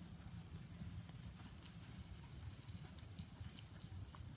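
Faint hoof and paw steps of a small flock of sheep and a herding dog moving over sand, over a low steady rumble.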